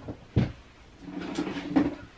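A cupboard being opened with a sharp knock about half a second in, followed by about a second of things inside it being moved and scraped while someone fetches a flat iron.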